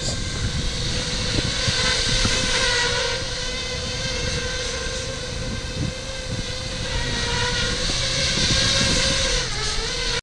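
FPV racing quadcopter's brushless motors and propellers running with a steady whine over the rush of prop wash, wavering slightly in pitch and dipping briefly near the end. The quad is running wet, just after being soaked with water mist to test its waterproofing.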